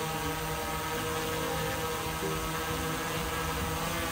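Autel EVO II Pro quadcopter hovering overhead, its four propellers giving a steady many-toned buzz, with small shifts in pitch now and then as the motors adjust to hold position.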